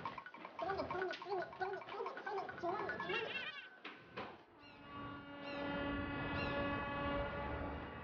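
Quick footsteps running along a hard corridor floor with a wavering, warbling sound over them; from about halfway, soft music with held notes takes over.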